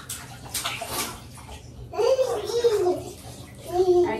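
Bath water splashing in an infant tub, then about two seconds in a baby's high-pitched babbling, with a short second bit of babble near the end.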